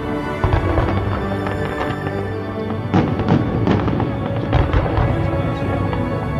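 Background music with fireworks bangs over it: a run of sharp bursts starting about halfway through, several in quick succession.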